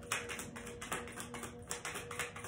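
Tarot cards being shuffled by hand: an irregular run of quick, soft card flicks and taps, several a second, over a faint steady background tone.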